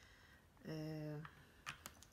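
A woman's short hummed "mmm" at a steady pitch, followed near the end by two light, sharp clicks.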